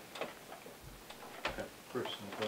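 Papers being handled at a table: a few light, irregular clicks and rustles as sheets are lifted and turned.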